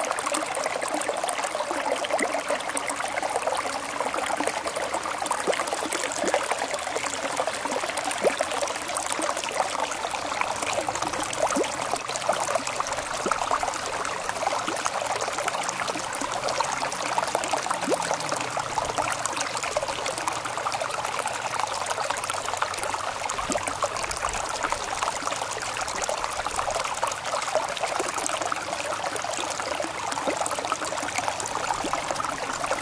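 Water trickling and running steadily, like a small stream, with no break.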